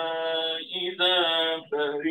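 A man's voice reciting the Quran in a melodic chant, holding long steady notes with short breaks between phrases.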